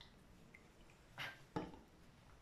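A small bottle of food colouring set down on a table with a single light knock, just after a brief rustle of handling.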